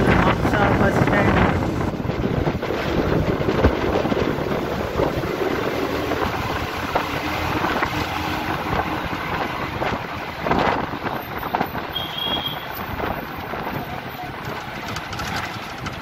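A bus driving through town streets, heard from inside the passenger cabin: steady engine and road noise.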